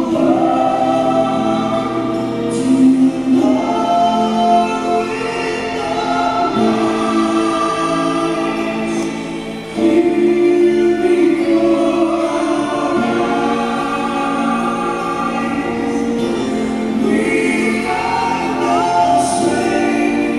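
A choir singing a sacred song, many voices holding long notes, with a brief dip about halfway through before it comes back louder.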